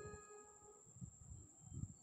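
Near silence in a pause between phrases on a Casio SA-75 keyboard. The last notes fade out at the start, and there are a couple of faint low thumps, about a second in and near the end.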